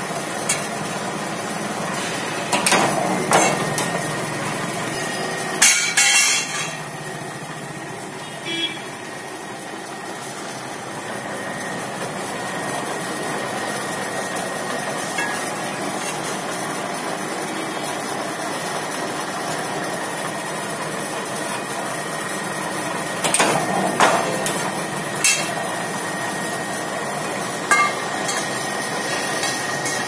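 Power press running with a steady motor hum, broken by irregular metal clanks and thuds as it presses 25×25 square pipe into a bend. The loudest clank comes about six seconds in, with others near three seconds in and again near the end.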